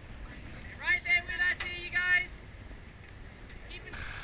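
A voice shouting out loudly about a second in, rising in pitch at the start and held for about a second and a half, over a low steady rush of wind and water.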